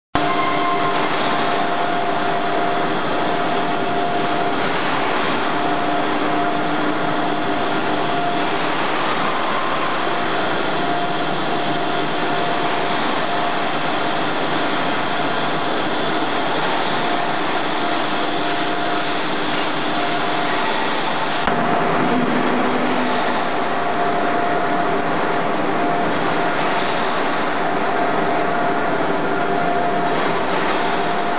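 Steel pipe mill machinery running: a loud, steady hiss with several steady humming tones. The sound changes suddenly about two-thirds of the way through.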